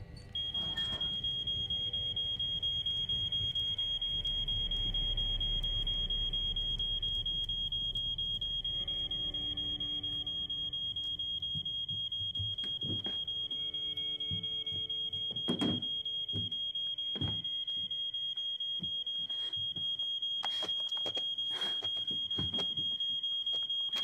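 Household smoke alarm sounding one continuous high-pitched tone, set off by smoke from a fireplace whose flue was left closed. A few scattered thuds sound beneath it.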